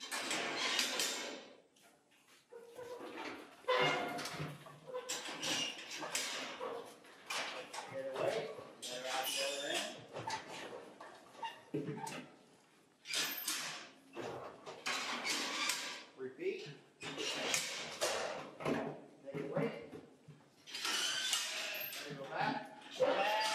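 Sheep being worked through a pen into a wooden handling chute: scattered bleating-like calls mixed with repeated clattering and knocking of hooves, gates and panels.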